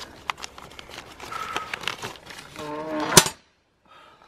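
A paper permit crinkling and rustling as it is pushed into a black metal drop box, with scattered small clicks and taps from the box, then one sharp clank from the box a little after three seconds in, the loudest sound, before the sound cuts out suddenly.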